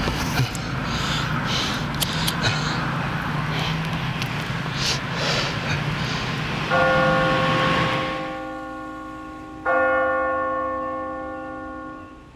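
A bell struck twice, about three seconds apart, each stroke ringing out and slowly fading. Before the first stroke there is a steady noisy background with a few faint clicks.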